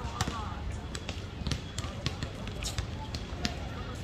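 Basketballs bouncing on an outdoor paved court some distance off: irregular, scattered thuds, several a second at times.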